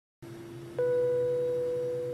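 A single airliner cabin chime ding, striking about a second in and ringing on as it slowly fades, over a steady low hum of cabin drone.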